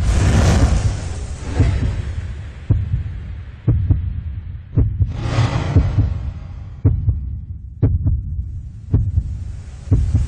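Logo-intro sound effects: a deep thud about once a second over a steady low hum, with a rushing whoosh at the start and another about five seconds in.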